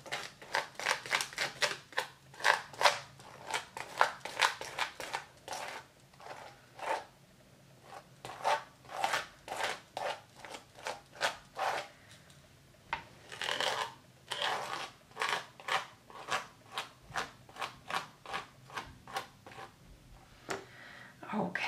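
Palette knife scraping glass bead gel across heavyweight paper: a gritty scrape with each stroke, the beads sounding almost like sand in paint. The strokes come about two a second, with a couple of short pauses.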